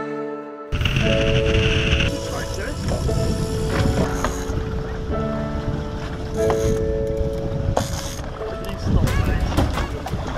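Background music playing, joined suddenly about a second in by a rush of wind and sea noise on an open fishing boat, with scattered knocks.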